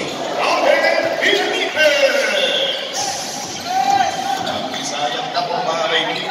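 Gym game sound: unintelligible voices and shouts from spectators and players echo around the hall, while a basketball bounces on the court.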